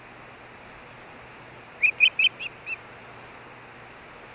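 Osprey giving a quick series of five sharp whistled chirps, the first three loudest and the last two fainter, over a steady hiss.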